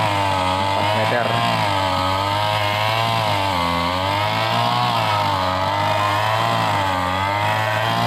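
Brush cutter engine running steadily while cutting grass, its pitch rising and falling every second or so as the load changes.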